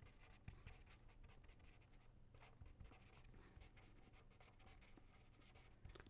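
Faint scratching of a pen writing on paper, in short irregular strokes, over a faint low hum.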